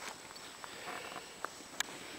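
A quiet pause: faint outdoor background with a few faint, sharp clicks, the clearest near the end.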